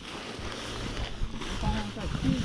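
Steady swishing of tall meadow grass against legs and footsteps as people walk through it, with a faint voice in the second half.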